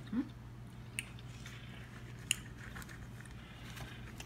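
A person chewing a mouthful of fresh sliced tomato, with a short murmured 'mm-hmm' at the start. Two sharp clicks come about one and two seconds in, over a steady low hum.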